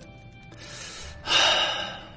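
Quiet background music, then, about a second in, a person's sharp breathy intake of breath lasting under a second.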